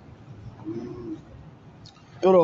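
A pigeon cooing once, faint and low, about half a second in, over a quiet steady hum.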